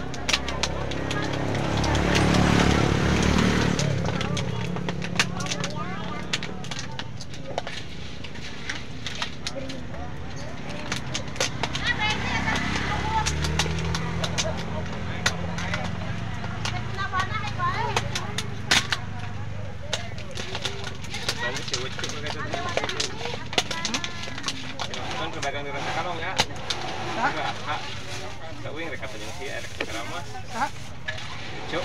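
A motorcycle engine passing close by, swelling about a second in and fading by about four seconds, then another passing about twelve to sixteen seconds in. Scattered sharp clicks and clatter run throughout.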